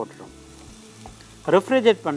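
Faint steady sizzle of food frying in a pan, with a man speaking briefly near the end.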